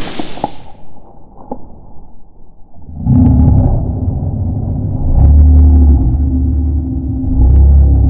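A loud low rumble starts suddenly about three seconds in and swells twice, with a few faint clicks before it.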